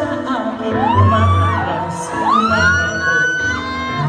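A man singing live into a microphone over a pop backing track, sliding up into high notes in a vocal run and holding one high note for about a second in the second half.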